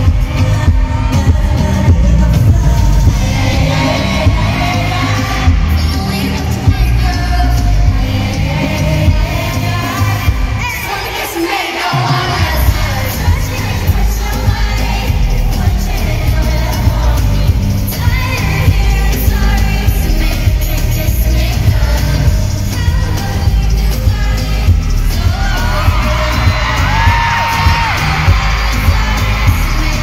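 Live pop song played loud through an arena sound system: a heavy bass beat with a woman singing over it. The bass drops out briefly about eleven seconds in, then comes back.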